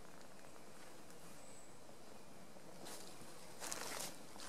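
Quiet woodland ambience with a steady faint hiss and one brief, high chirp about a second and a half in, then a short rustle near the end.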